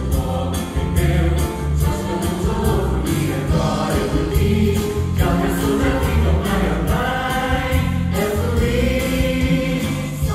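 A stage musical's cast singing together in chorus, accompanied by music with a steady beat and a heavy bass.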